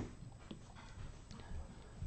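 Quiet room tone with a faint light tap about half a second in.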